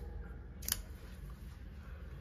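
One sharp metallic click from a small stainless steel frame-lock folding knife, the CRKT Pilar, as it is picked up and its blade is swung open, against faint room noise.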